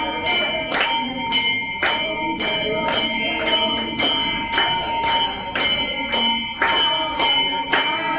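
Temple bells ringing through an aarti, struck in a steady rhythm of about two strokes a second, with hand clapping and voices singing along.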